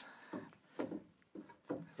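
A few short, light knocks and scrapes of a wooden board being handled against a wooden shelf frame.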